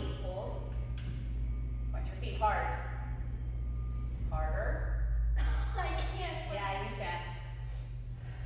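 A woman's voice talking in several short phrases, over a steady low hum.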